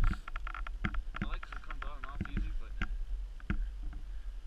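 Stopped snowmobile with a low steady rumble under a run of sharp clicks and knocks close to the camera, and a brief muffled voice in the middle.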